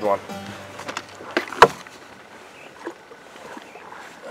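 Knocks and handling noise on a bass boat as a hooked smallmouth bass is brought to the side for netting. One sharp knock about a second and a half in is the loudest sound, with a few fainter taps around it.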